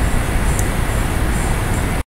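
Steady, loud background noise with a deep rumble and a hiss, cutting off suddenly at the end.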